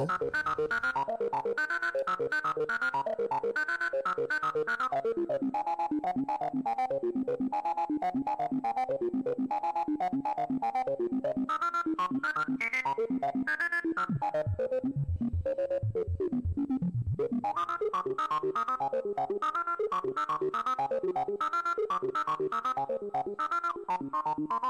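A sequenced analog synthesizer line, an SEM-style VCO run through a CEM3320-based Eurorack low-pass filter (PM Foundations 3320 VCF), playing a fast run of short notes whose cutoff and resonance change from step to step, with a few falling sweeps around the middle. The filter input level is turned up for a crunchier, driven tone.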